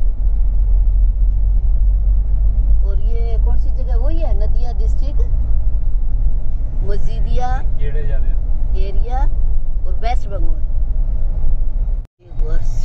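Steady low rumble of a Mahindra vehicle's engine and tyres heard from inside the cabin while driving on a paved road, with voices talking now and then over it.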